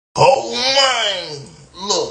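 A man's long, drawn-out wordless vocal wail whose pitch rises and then falls over about a second, followed by a short second cry near the end.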